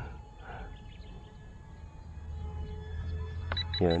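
Faint, steady high whine of a micro electric RC jet's motors in flight, over a low rumble that grows louder in the second half. A man says one short word near the end.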